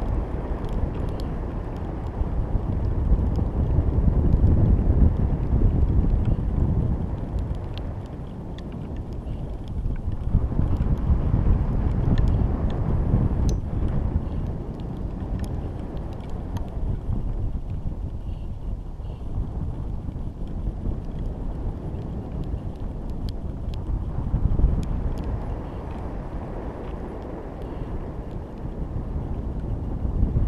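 Wind rushing over a GoPro camera riding a high-altitude balloon in flight: a low rumble that swells and eases every few seconds, with faint scattered ticks.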